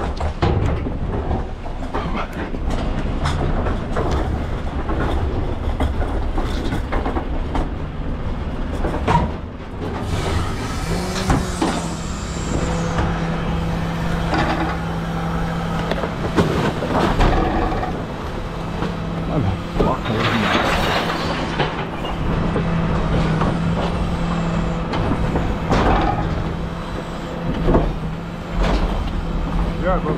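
Knocks and rattles of plastic wheelie bins being handled, then, from about eleven seconds in, the steady hum of the refuse truck's rear bin lift running while a bin is tipped.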